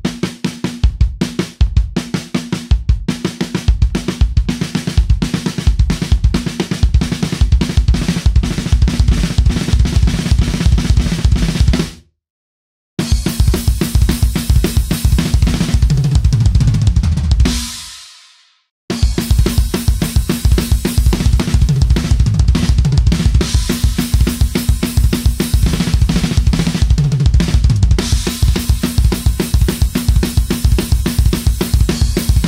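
Acoustic drum kit played fast: single-stroke fills on snare and toms alternating with bass-drum doubles in a right-left-kick-kick sticking, with cymbal crashes, some fills running down the toms from high to low. The playing cuts off suddenly about twelve seconds in, and again about eighteen seconds in after a cymbal rings out and fades, then starts up again each time.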